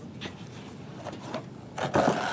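An emptied hardcover book being handled on a table: a couple of light taps, then a short rubbing, sliding sound near the end as the book is lifted and turned over.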